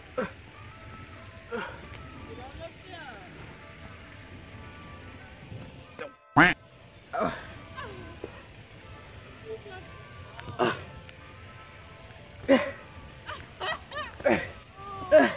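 A man's short grunts and mumbled sounds of effort as he scrambles down a slippery muddy bank, over faint background music. A single sharp knock, the loudest sound here, comes about six seconds in, right after a brief dropout.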